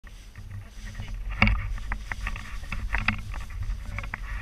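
Wind rumbling on an action camera's microphone, with scattered knocks and clicks from paragliding harness and gear being handled; the loudest knock comes about one and a half seconds in.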